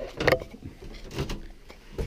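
A few knocks and shuffles of a person climbing the companionway steps out of a small sailboat's cabin, the sharpest about a quarter second in and just after a second.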